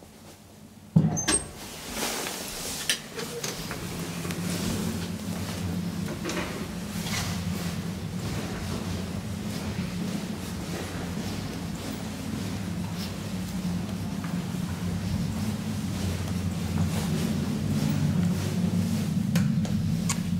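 An elevator landing door shuts with a loud knock about a second in. Footsteps follow over a steady low hum.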